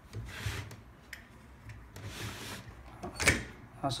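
Steel dies of a hand-lever button-badge press being slid along the press base and set into position: soft scraping slides, then a sharp metal clack a little after three seconds in.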